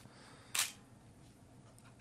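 A single short, sharp burst of noise about half a second in, over faint room tone.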